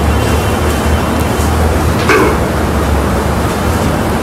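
Steady low hum with hiss, and one brief faint sound about two seconds in.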